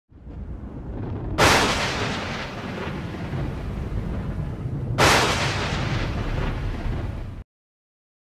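Logo-intro sound effect: a low rumble with two sudden heavy explosion-like hits, about three and a half seconds apart, each trailing off into a long rumble. It cuts off abruptly half a second before the end, leaving silence.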